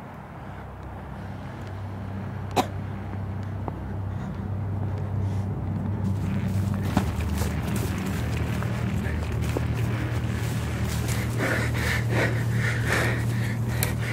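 Dry tall grass rustling and crackling against a handheld camera as someone pushes through it, growing denser and louder from about halfway, over a low steady rumble. A single sharp click about two and a half seconds in.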